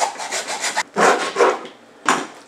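Hacksaw cutting through pork rib bones, in a run of quick rasping back-and-forth strokes with a short pause a little under a second in.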